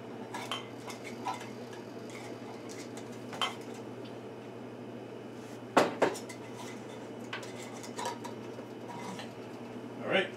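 Metal canning lids and screw bands clinking against glass mason jars as they are set on and turned down not tight. There are several separate clinks, the loudest a pair about six seconds in, over a steady low hum.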